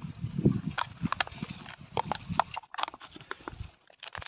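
Handling noise: a run of irregular light clicks and taps, with a short quiet gap just before the end.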